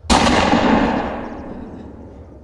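A single gunshot, sudden and loud, its echo dying away over about a second and a half.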